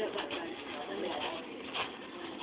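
Faint, low background talk with no clear words, and a short tick near the end.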